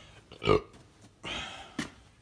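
A man's short burp about half a second in, followed by a brief rustle and a sharp click near the end.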